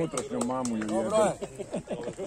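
Several voices calling out and talking over each other, one holding a long call about half a second in, with a few sharp clicks.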